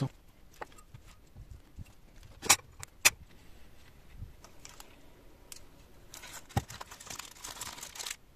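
Metal parts of a disassembled stepper motor clicking and clinking as they are handled, with two sharp clicks about two and a half and three seconds in. Near the end, aluminium foil crinkling as it is wrapped around the motor housing.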